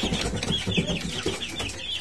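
Young chickens peeping in a coop: a rapid run of short, high chirps, about five a second.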